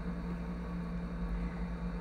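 Room tone: a steady low hum with faint background noise, no other event.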